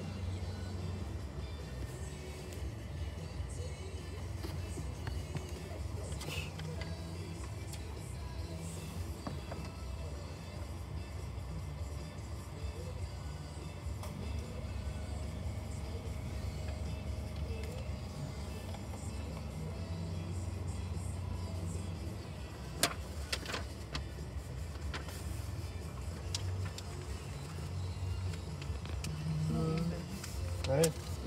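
Car cabin noise: a steady low engine and road hum as the car drives slowly, with a few sharp clicks about three-quarters of the way through.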